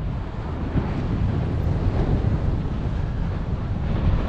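Wind buffeting the microphone, a steady low rumble, with the wash of the sea's surf underneath.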